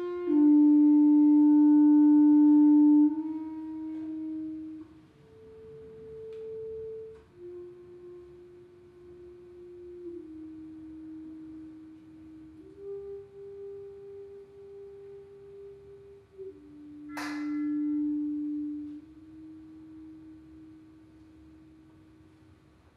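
Solo clarinet playing slow, soft held notes one at a time, each sustained for several seconds before moving to the next pitch; the first note, about half a second in, is the loudest, and the later notes are quieter and fade near the end. A brief burst of hiss sounds about three-quarters of the way through, just before a louder held note.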